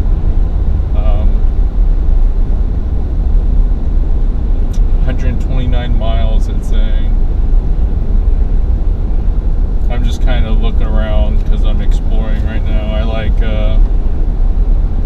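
Steady low road and engine rumble inside the cab of a Ford F-350 pickup driving at road speed.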